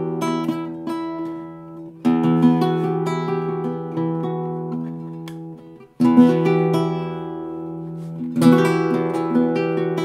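Nylon-string cutaway flamenco guitar played solo: chords strummed and left to ring and fade, with fresh strums about two seconds in, about six seconds in and about eight and a half seconds in, and single notes moving over the ringing chords.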